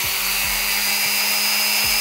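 Small handheld electric rotary tool (micro drill/engraver) running steadily with a high whine and hiss, its burr working against a hen's eggshell.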